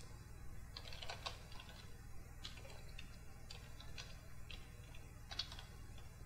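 Faint, irregular key clicks of a computer keyboard as a command is typed.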